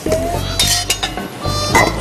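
Metal tongs and a perforated steel skimmer clinking a few times against a stainless-steel pot as a blanched mandarin fish is lifted out, over background music.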